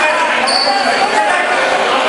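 A basketball being dribbled on a gym floor among voices from players and spectators. A brief, high-pitched squeak comes about a quarter of the way in.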